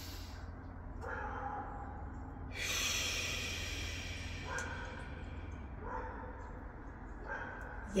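A woman doing slow yoga breathing: the end of a breath drawn in through the nose, then a long breath blown out through the lips starting about two and a half seconds in. A faint steady low hum sits underneath.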